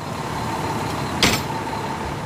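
Fire engine running at idle, a steady rumble with a faint high whine, and one sharp knock a little past the middle.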